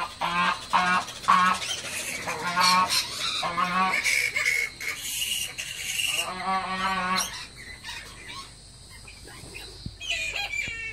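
Domestic fowl calling: a string of short, evenly repeated calls a few times a second, then longer, busier runs of calls with some higher squeals, dying down for the last couple of seconds.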